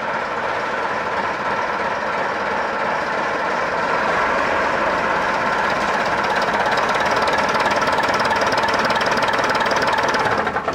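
The diesel engine of a 1965 RCL Routemaster double-decker bus, converted to run on vegetable oil, idling steadily with a fast, even chug. It gets a little louder from about four seconds in.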